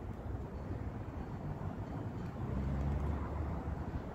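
A low outdoor rumble with a fainter hiss above it, swelling a little about two and a half seconds in.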